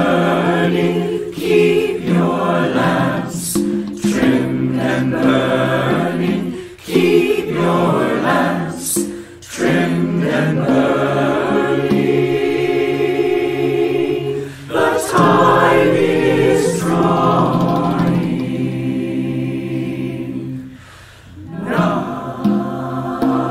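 Mixed choir of men and women singing a carol in harmony, phrase after phrase with short breaks between them.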